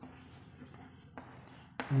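Chalk scratching on a chalkboard as words are written out by hand, faint, with a sharp tap a little over a second in.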